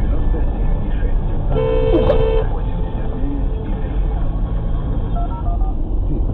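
A car horn gives one steady blast lasting about a second, about a second and a half in, over the continuous drone of engine and road noise heard inside a car's cabin.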